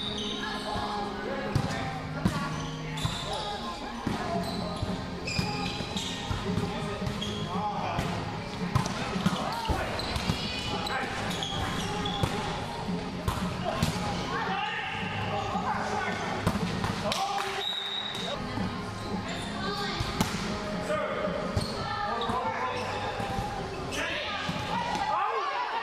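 Indoor volleyball rally: the ball is struck again and again with sharp slaps, players call out to each other, and shoes give brief high squeaks on the hardwood court floor.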